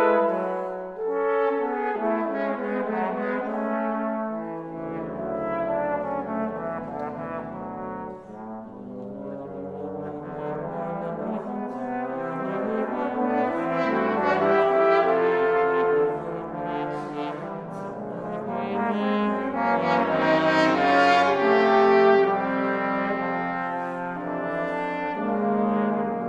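Trombone quartet playing in four-part harmony, sustained low notes under moving upper parts. A loud chord ends about a second in, and the music swells twice later on.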